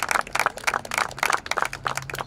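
Applause: a group of people clapping, a dense irregular patter of hand claps.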